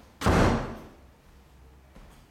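A single loud bang about a quarter second in, dying away within half a second.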